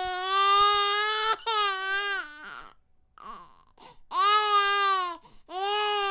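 A baby crying: four long wails, each falling in pitch at its end, with short faint sobs between the second and third.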